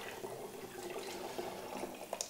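Chilli-infused oil trickling faintly through a plastic funnel into a glass bottle as it fills.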